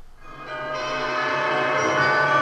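Instrumental music fading in about half a second in and building to a steady level, made of sustained, ringing, bell-like tones.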